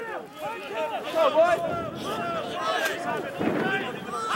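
Indistinct shouting and calling from several men's voices, overlapping and with no clear words.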